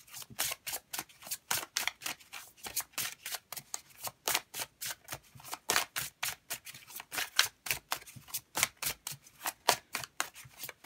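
An oracle card deck being shuffled hand to hand: a steady run of short card slaps and riffles, about four a second.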